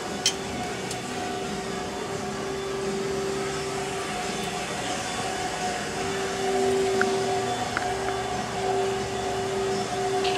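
A steady machine hum with a low droning tone that swells and dips, and a sharp click just after the start followed by two faint ticks later on.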